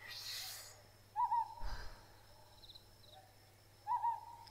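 Owl hooting twice, short calls about two and a half seconds apart, after a soft breathy hiss at the start.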